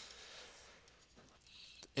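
Faint scratching of a stylus writing on a drawing tablet, in two short spells of strokes, one early and one late.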